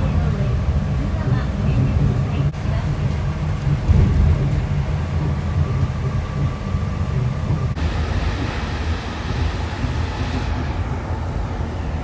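Nippori-Toneri Liner rubber-tyred automated guideway train running, heard from inside the car: a steady low rumble with a faint whine, and a hiss that rises for a couple of seconds from about eight seconds in.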